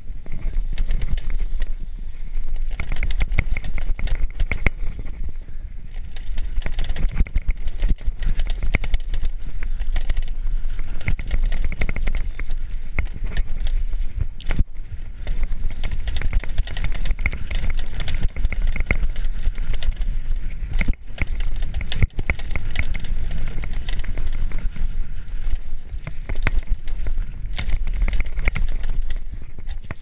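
Mountain bike descending a dirt forest trail at speed: a steady low wind rumble on the camera's microphone over tyre noise on dirt, with frequent clicks and knocks as the bike rattles over bumps.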